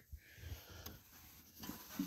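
Faint handling sounds as a felt liner is laid into the bottom of a small steel safe, a few soft rubs and touches, slightly louder near the end; otherwise almost quiet.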